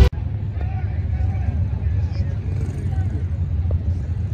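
Steady low rumble of modern Hemi V8 drag cars idling at the starting line, heard from the grandstand, with faint voices in the background.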